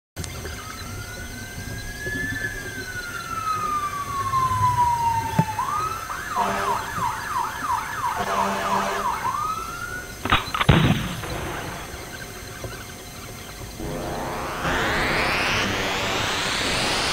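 Police siren sound effect: one slow wail that rises and then falls, followed by a fast yelping warble for about four seconds. Then come two sharp cracks around ten seconds in and a rising whoosh that builds near the end.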